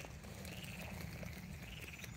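Faint chorus of frogs croaking over a low, steady background rumble.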